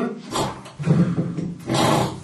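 A man imitating snoring with his voice: a rough, rasping low snore followed by a breathy exhale near the end.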